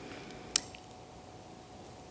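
Quiet room tone in a pause between speech, with one sharp short click about half a second in.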